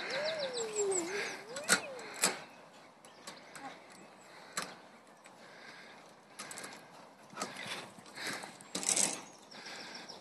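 Faint creak from a tyre swing's chains and fittings as it swings, one drawn-out squeak that dips in pitch and rises again, then scattered light clicks and knocks.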